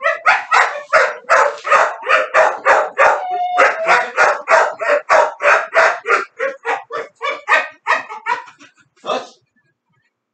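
Dog barking rapidly and excitedly, about four barks a second, with a short whine a little after three seconds in. The barks weaken over the last few seconds and stop about a second before the end.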